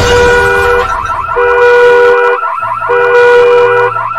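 A loud horn-like blare, two tones held together, sounds three times, each for under a second, over a busy layer of music and sound effects.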